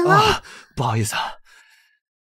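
Breathy sung vocal of an English love song: a gliding sung phrase ends about half a second in, followed by a short, lower, breathy phrase around one second.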